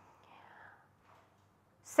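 Near silence in a pause between sentences, with a faint breath about half a second in; a woman's speech starts again at the very end.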